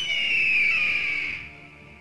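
A person whistling one long note that slides slightly downward in pitch and fades out about a second and a half in.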